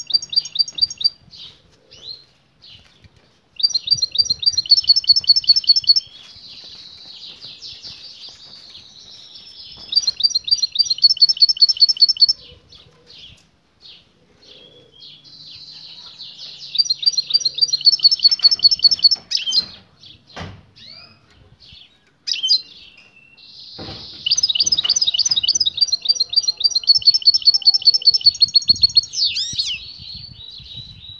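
European goldfinch twittering, in four bursts of rapid repeated high notes, each a few seconds long, with scattered single chirps between them.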